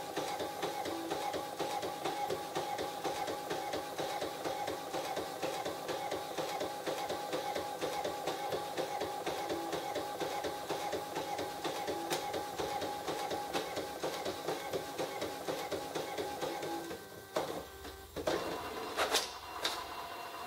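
Brother DCP-130C inkjet printer printing a photo copy in its slow best-quality mode: a steady rhythmic run of the print head shuttling back and forth. It stops about seventeen seconds in, followed by a brief whir and a few clicks as the finished page is fed out.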